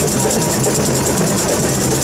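Samba percussion band (bateria) playing a fast, steady rhythm: an even rattling beat high up over repeated low drum hits.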